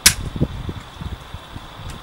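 A sharp click as a turpentine jar is set back on a tripod pochade box easel, followed by gusty wind buffeting the microphone with low, uneven rumbles.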